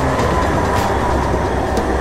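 A tram passing close by: a steady rush of rolling and running noise with a thin whine.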